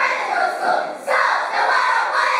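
A choral-speaking team of many young voices declaiming a line together in unison, with a brief dip and a new line coming in sharply about a second in.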